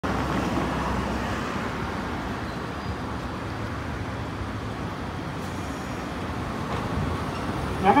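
Okayama Electric Tramway 7300-series streetcar rolling slowly into the stop amid steady street traffic noise, a low rumble that is a little louder at first and then eases. A station announcement starts right at the end.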